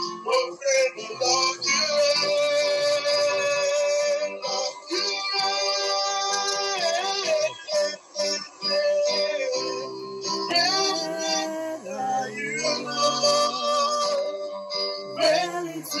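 Praise and worship music: a singer holding long, sung notes over keyboard accompaniment.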